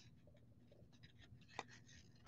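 Faint papery scraping and ticking of cardboard trading cards being slid one behind another in a hand-held stack, with one sharper card tick about one and a half seconds in.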